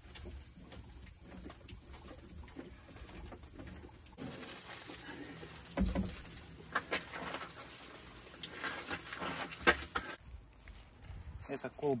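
Handling noises as a plastic cartridge-filter housing is unscrewed from a well pump's supply line and pulled off: scattered knocks and clicks of plastic and fittings, the sharpest one near the end.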